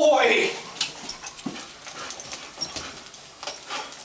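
Bed bug detection dog sniffing and breathing in short, irregular quick bursts close to the microphone. There is a brief pitched voice, loudest of all, at the very start.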